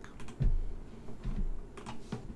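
Computer keyboard and mouse being used: several separate clicks and taps, not steady typing.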